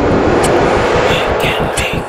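A trailer sound effect: a loud rushing rumble, like a passing aircraft, fading over the first second and a half. From about a second in, a fast, even pulsing takes over.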